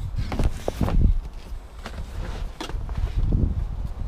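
A large sports holdall of footballs being lifted and set down in a hatchback's boot: rustling fabric, a few irregular knocks and footsteps, with rumbling handling noise on the microphone.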